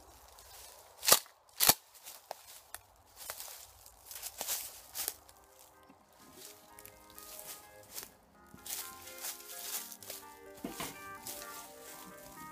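Two loud, sharp clacks about half a second apart, the pump slide of a Remington 870 Police Magnum 12-gauge shotgun being racked back and forward, then lighter clicks and rustles. Background music comes in about halfway through.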